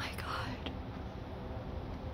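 A brief breathy, whispered voice sound in the first half second, over a steady low background rumble, with a faint click just after it.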